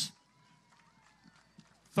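Near silence, with only a few faint clicks, after a man's voice cuts off at the start.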